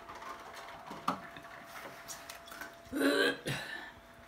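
A woman clears her throat and coughs, loudest about three seconds in, from the burn of a very hot chicken-wing sauce. A light knock about a second in.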